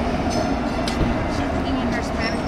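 Light-rail train at the station platform, a steady low rumble and hum.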